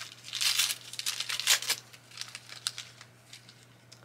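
Packaging crinkling and tearing as a small wrapped item is opened by hand, a run of crackles that thins out and stops about a second before the end.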